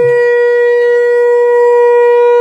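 Conch shell (shankh) blown in one long, steady, clear-pitched blast, part of a series of ritual conch blasts.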